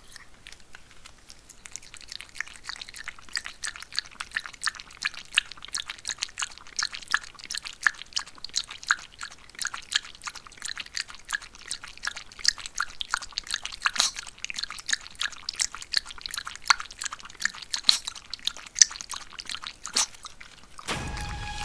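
A maltipoo lapping water from a ceramic bowl: a quick, continuous run of wet clicking laps that starts about a second and a half in.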